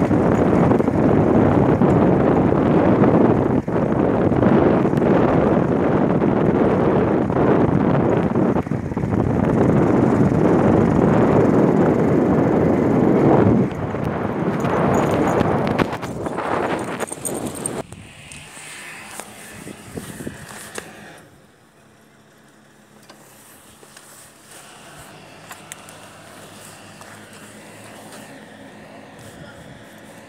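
Loud, steady rushing and rumbling noise, such as travel noise buffeting the microphone, that fades over about four seconds roughly halfway through, leaving a much quieter background with a few faint knocks.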